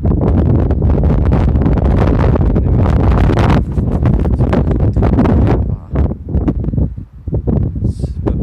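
Wind buffeting the camera's microphone: a loud, rough rumble that eases off briefly about six seconds in.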